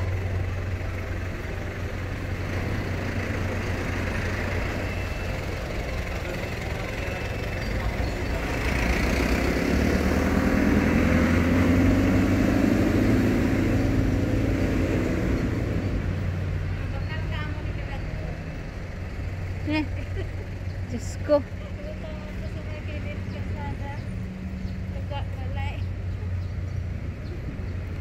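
A car driving slowly past close by, its engine and tyres swelling up to a peak about ten to fifteen seconds in and then fading, over a steady low engine hum of the car park. Faint voices and a single sharp click follow later.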